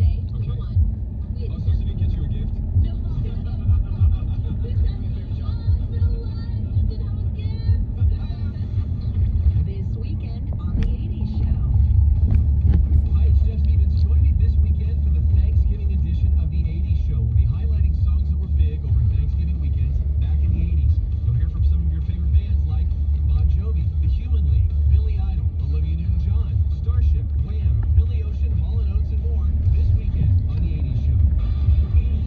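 Low, steady rumble of a car driving, heard from inside the cabin: engine and road noise that grows heavier about twelve seconds in.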